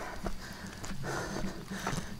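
Footsteps on a rocky mountain trail, an irregular run of short scuffs and clicks, with a person's breathing.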